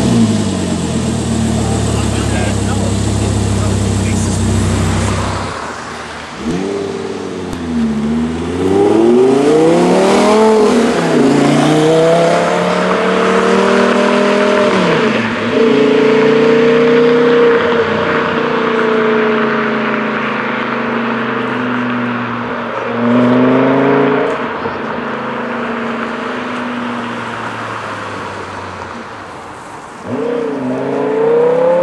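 Audi R8 engine idling high just after start-up, a steady low note. Then a car accelerates hard through several gears, its engine note climbing and dropping at each shift. It holds a steadier note and fades away near the end.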